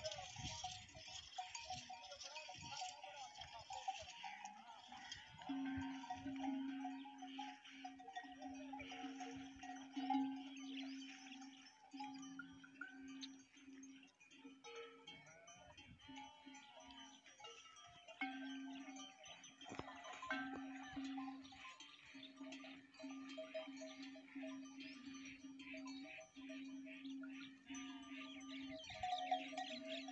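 Bells on a mixed herd of cattle, sheep and goats clanking as they drink and move, with sheep and goats bleating now and then.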